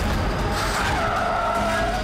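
Car tyres screeching under hard braking: a squeal that starts about half a second in and drops slightly in pitch as it goes on.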